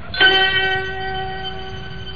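Musical sting of a radio drama: a single bell-like note struck about a fifth of a second in and held, fading slowly, bridging between scenes.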